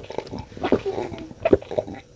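A man gulping cola from a glass: a quick run of swallows.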